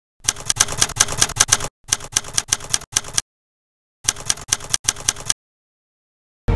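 Typewriter keys clacking in three quick runs of strikes, each about a second and a half long, with short silent pauses between.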